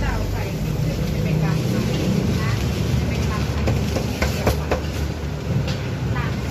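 Busy street-stall ambience: a steady low rumble of traffic with background chatter, and scattered short clicks and knocks of handling at the counter.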